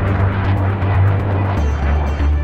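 A jet aircraft's roar fading away over low, steady background music.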